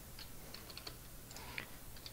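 Faint, irregular clicking of a computer keyboard and mouse.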